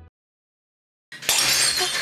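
Silence for about a second, then a sudden loud, noisy crash that keeps going to the end.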